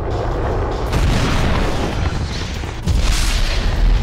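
Movie sound effect of the Iron Man suit's jet thrusters in flight: a deep rumbling roar with whooshing rushes. It swells about a second in and grows loudest near the end.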